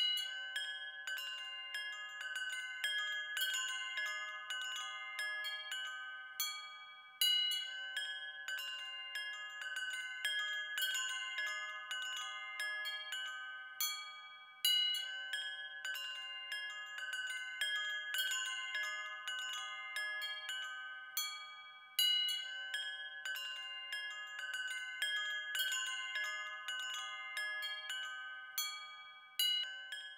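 Chimes ringing: many overlapping high, bell-like tones that ring on and fade, with a louder cluster of fresh strikes about every seven and a half seconds.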